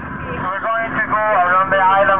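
Voices talking over the steady low hum of a tour boat's engine, fading in at the start.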